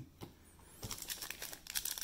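Soft crinkling and clicking of plastic card sleeves and top-loaders handled by hand, starting about a second in.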